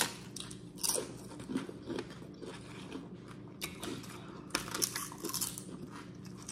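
Close-up eating sounds: chewing and crunching bites of a toasted-bread fried chicken sandwich, in short irregular crunches that come thicker in the second half.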